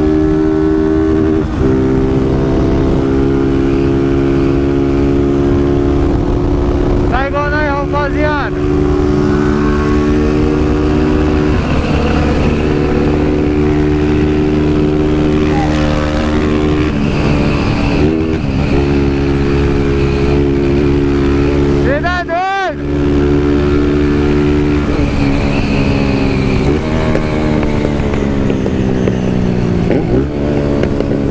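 Honda 160 cc single-cylinder motorcycle engine running under way, its pitch shifting up and down several times with throttle and gear changes and dropping near the end. Two brief wavering whistles come about eight and twenty-two seconds in.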